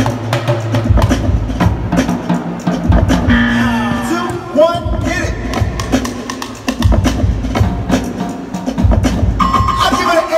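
A live street drumming troupe beating drums with sticks in rhythm over loud backing music, with many sharp stick hits throughout.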